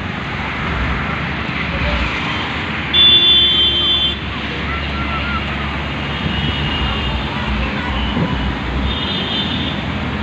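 Floodwater rushing across a road in a steady roar, with a heavy truck's engine running as it drives through the water and voices in the distance. About three seconds in, a loud high steady tone sounds for about a second, and a fainter one comes near the end.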